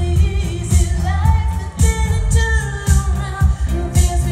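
Live pop band playing, with a female lead vocal singing a melody over a steady drum beat, bass and synthesizer.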